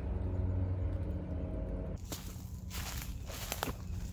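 Outdoor ambience picked up by a phone's microphone: a low steady rumble with faint hum tones. About halfway through it changes abruptly to irregular rustling and crackling.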